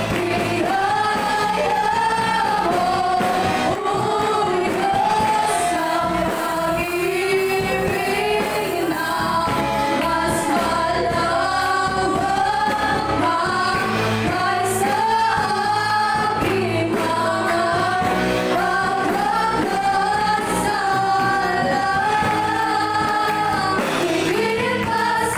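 Live worship music: female vocalists singing a praise song at microphones, backed by a live band with electric guitar and keyboard.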